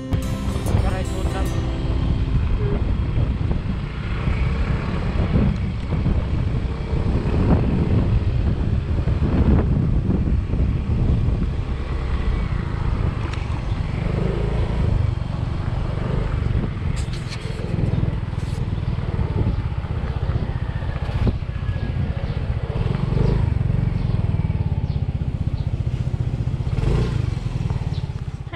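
Motor scooter running along a rough road, with heavy wind rumble on a camera microphone carried at the rider's helmet.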